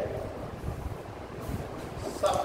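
A pause between spoken phrases, filled with an uneven low background rumble.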